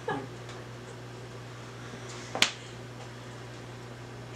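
A single sharp click about two and a half seconds in, over a steady low hum.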